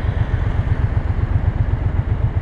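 Motorcycle engine idling at a standstill: a steady, fast, even low throb.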